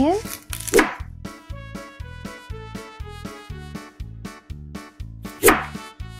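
A kitchen knife cutting into a raw onion on a plastic cutting board, two short slicing strokes, about a second in and near the end. A light background music track with a steady beat plays throughout.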